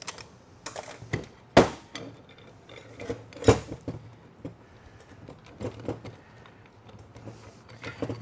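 Metal clicks and clinks of a TH400 transmission clutch drum being taken apart by hand: its steel snap ring pried out and set down, and the clutch plates lifted out. Scattered light ticks, with two louder clanks about one and a half and three and a half seconds in.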